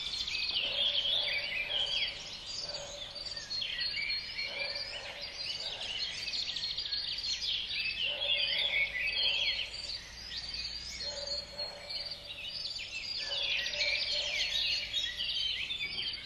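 A dense chorus of many small songbirds chirping and trilling together, with a lower, steadier call from another bird repeating every couple of seconds.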